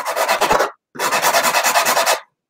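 Baked sugar cookie edge rubbed along a stainless steel rasp-style zester, shaving the cookie to an angled, flat edge: a dry rasping in two bouts with a short pause between them.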